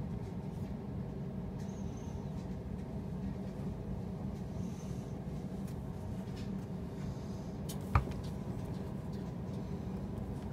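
Swivel knife cutting lines into tooling leather: faint, short scratches over a steady low hum, with one sharp knock about eight seconds in.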